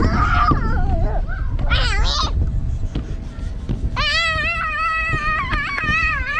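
Children squealing and crying out in long, high-pitched wordless calls while bouncing on an inflatable jumping pillow. The calls come once at the start, again about two seconds in, and a longer, wavering one from about four seconds on, over a steady low rumble.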